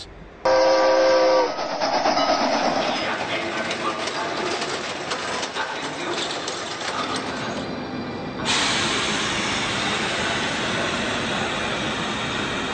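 A train whistle blows once, briefly, then a train runs with a steady noise that becomes louder and fuller about eight and a half seconds in.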